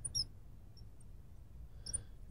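Faint, short high squeaks of a marker pen writing on a glass lightboard, a few times: just after the start, once in the middle and again near the end.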